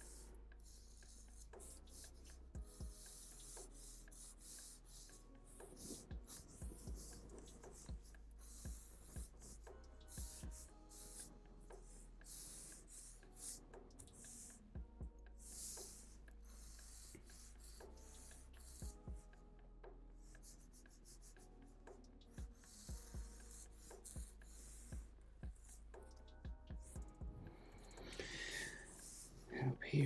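Black marker pen drawing on paper: many short, faint, scratchy strokes as lines are traced around shapes.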